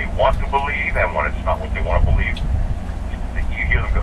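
A person's voice talking, in phrases that break off briefly about two and a half seconds in, over a steady low hum.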